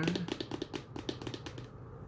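A rapid run of light clicks and taps that fades out after about a second and a half: hands with long nails handling an eyeshadow palette as it is picked up.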